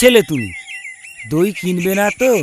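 Spoken dialogue, with a quick run of high, short bird chirps in a brief pause about half a second in.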